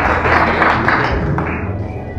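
Guests applauding, the clapping dying down over the second half.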